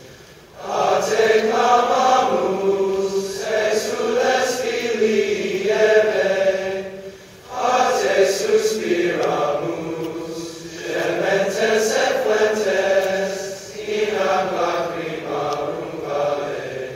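Large male choir singing sustained, chant-like phrases, with short breaks between phrases about half a second in and again about seven and a half seconds in.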